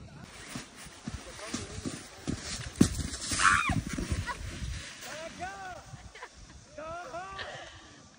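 Snowboard sliding and scraping over packed snow, with wind on the microphone and a sharp click about three seconds in. Short rising-and-falling cries from a person's voice, one in the middle and several in quick succession near the end, as the rider loses balance and falls into the snow.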